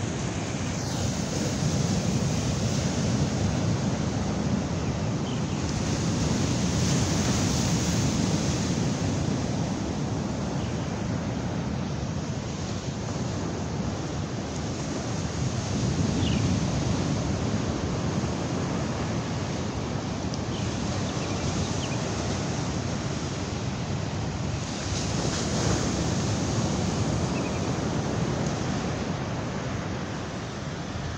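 Ocean surf breaking on a sandy beach, a continuous rushing noise that swells and eases every several seconds, with wind buffeting the microphone.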